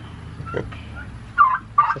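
A turkey gobbling: a rapid run of loud, warbling calls starting about one and a half seconds in.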